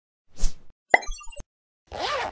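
Animated-intro sound effects: a short whoosh, then a pop followed by a quick run of short high notes that ends in a click about a second and a half in.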